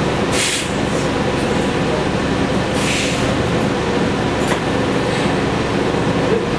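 The Cummins ISL-G natural-gas engine of a New Flyer XN40 Xcelsior CNG transit bus running steadily, heard inside the cabin from the rear seats. Two short hisses come about half a second in and again about three seconds in.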